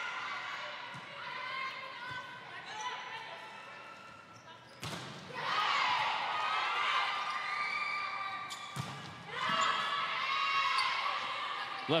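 Volleyball rally on an indoor court: sharp smacks of the ball being struck, about five and nine seconds in, with high squeaking and calls from the players around them.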